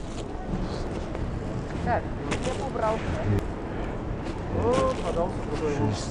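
Supermarket background noise and brief indistinct voices, with the rustle and light clatter of plastic-bagged bread loaves being put into a wire shopping cart.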